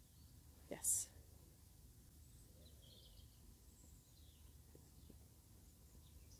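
Quiet outdoor background with a few faint bird chirps. About a second in comes one short, breathy, hissing burst: a softly spoken 'yes' clicker-style marker.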